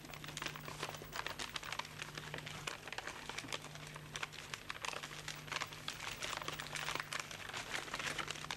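A sheet of paper being folded and creased by hand for origami: irregular crinkling and rustling as the paper is pressed and bent.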